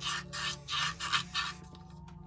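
Rubber-backed sandpaper rubbed by hand side to side inside a Homelite Super XL chainsaw cylinder: a quick run of short rasping strokes, about three or four a second, stopping about one and a half seconds in. The strokes are cleaning deposits off the bore around the exhaust port to save the cylinder, not removing metal.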